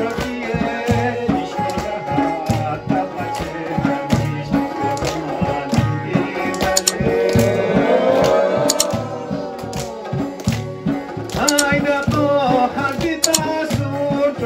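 Live Chitrali folk music: a Chitrali sitar and an electronic keyboard play a melody over a steady, even dhol drum beat.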